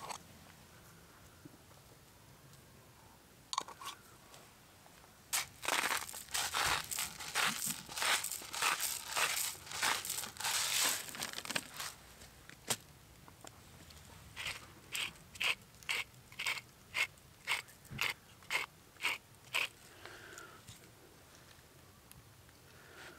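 Salt being ground over raw steaks from a hand-held salt grinder. First comes a long stretch of dense crunching from about five seconds in. Then, in the second half, a run of separate crunching twists comes about two a second.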